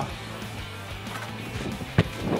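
Quiet background music, with a single sharp thud near the end as a football is struck on the volley.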